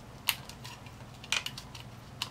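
Hard plastic toy parts clicking as the top piece of a toy drone is pressed onto its tracked base by hand: a few sharp clicks, one about a third of a second in and a close pair near the middle, with smaller ticks between.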